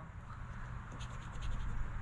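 A coin scratching the latex coating off a scratch-off lottery ticket, faint, in a few short strokes.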